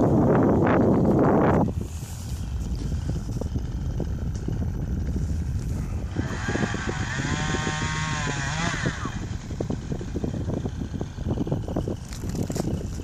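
Wind buffeting the microphone, heavy for the first couple of seconds and then lighter. From about six to nine seconds a pitched drone rises and falls.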